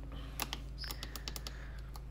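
Buttons on a variable-temperature electric kettle's handle control panel being pressed: a quick run of small plastic clicks, with a short high beep about a second in.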